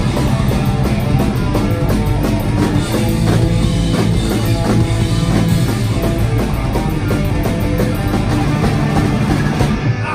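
Live punk rock band playing an instrumental stretch without vocals: electric guitars, bass and a drum kit with cymbals, loud and steady.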